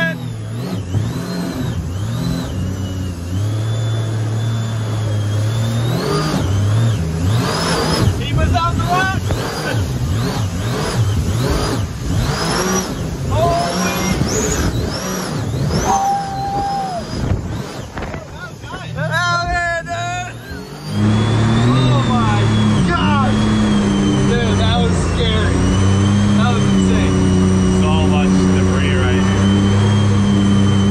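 Supercharged mini jet boat engines running hard through river rapids, with rushing water and spray. The engine pitch rises and falls over the waves, then about 21 seconds in the sound jumps louder and settles into a steady high drone.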